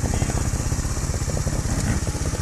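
Trials motorcycle engine idling with a steady, rapid low putter.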